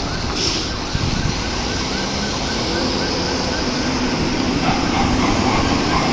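Street traffic with cars and a city bus driving past, the bus's engine humming steadily. A faint siren yelps over it, rising and falling about three times a second, through the first half.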